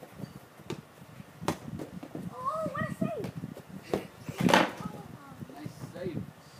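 Children playing in a backyard: a child's short, high-pitched call about halfway through, among scattered short knocks, and a louder noisy burst near the end.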